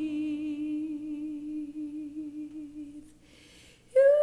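A woman's voice holding one long sung note with a slight vibrato, fading out about three seconds in, followed by a soft breath.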